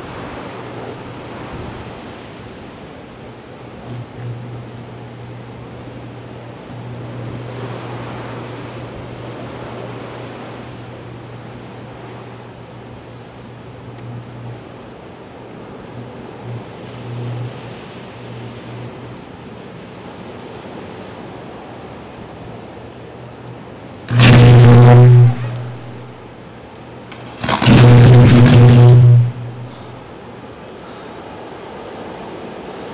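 Downed high-voltage power line arcing to ground: a low electrical buzz hums on and off. Near the end come two very loud buzzing arc bursts about three seconds apart, each lasting a second or two. The line is still live and shorting out.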